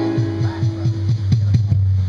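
A small rock band playing: electric guitars hold a chord over a sustained low note, with a fast run of drum hits. It breaks off near the end.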